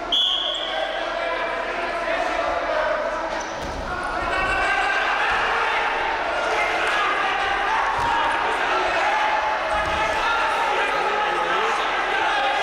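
A referee's whistle blows once, briefly, right at the start, restarting the wrestling. From about four seconds in, coaches and spectators shout over one another in a large hall, with a few dull thuds of the wrestlers' bodies on the mat as the takedown comes.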